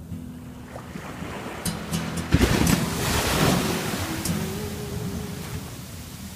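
A small ocean wave breaking on the sand at the shoreline. The surf builds, crashes about two and a half seconds in, then washes up the beach as a hiss that slowly fades.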